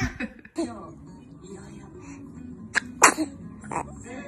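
Three short sneezes in the second half, the middle one the loudest.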